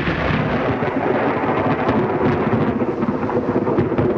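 Thunderous rumble of a large multiple-charge ammonium nitrate blast in an open-pit copper mine. The loud roar holds steady, with a dense crackle through it.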